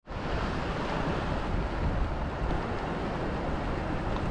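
Steady rush of surf breaking on a beach, mixed with wind rumbling on the microphone.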